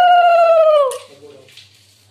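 A conch shell (shankha) blown during puja worship: one long, steady note that sags in pitch and breaks off about a second in, at the end of the player's breath.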